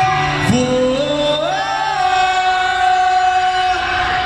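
Live synth-pop band music: sustained chords that slide upward in pitch about half a second in and again around a second and a half in, recorded from the audience.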